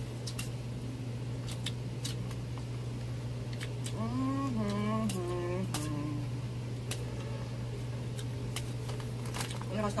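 Eating sounds of spicy instant noodles: scattered sharp clicks of chopsticks on a plate and a metal bowl, with chewing and slurping, over a steady low hum. A voice sounds briefly about four seconds in.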